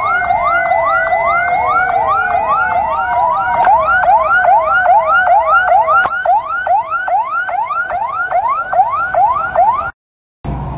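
Police vehicle sirens on a slow-moving convoy: a fast yelp of rising sweeps, about three a second, with a second, slower wailing siren alongside it for the first few seconds. The sound cuts off suddenly just at the end.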